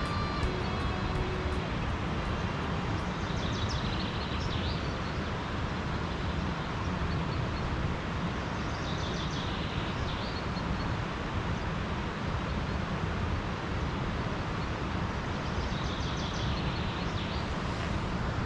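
A steady outdoor rushing noise with no clear source, after the last notes of music fade out in the first second or so. Faint brief higher sounds come three times, about 4, 9 and 17 seconds in.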